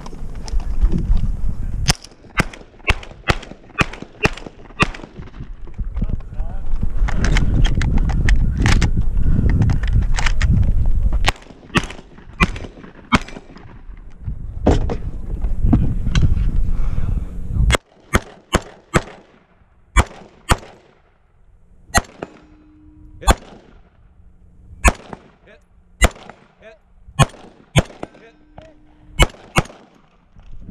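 Gunfire in a timed 3-Gun stage: a shotgun fired in quick strings over a loud low rumble for the first two-thirds. About eighteen seconds in, a scoped rifle takes over, fired in single shots roughly a second apart.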